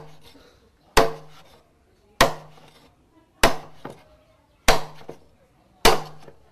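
A blade chopping into a bamboo pole with sharp strokes at a steady pace, about six strikes roughly a second apart, each leaving a brief ring. The bamboo is being cut into lengths between its joints.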